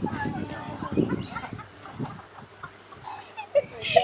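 Indistinct voices talking in the background, with low thuds in the first two seconds.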